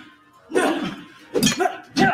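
Two short, loud vocal outbursts, grunts or cries of exertion from fighters in a staged sword-fight scene, about a second apart, with background music underneath.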